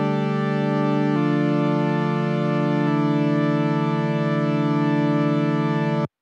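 Software synth in Ableton Live playing sustained chords at its original pitch, the notes stepping straight from one chord to the next with no MPE pitch bend between them. The chord changes abruptly about a second in and again about three seconds in, then cuts off suddenly at the end.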